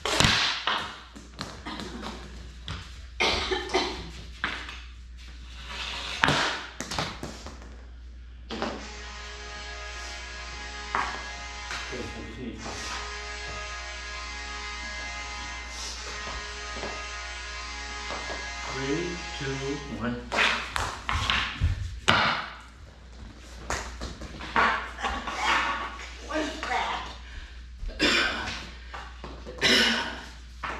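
Hockey sticks clacking together and a plastic ball knocking on a bare concrete floor in a rapid, irregular run of sharp hits. From about eight seconds in to about twenty seconds a stretch of music plays, with fewer hits over it.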